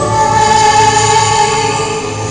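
A woman singing a hymn into a microphone, accompanied by violin and keyboard, with one long note held through most of it.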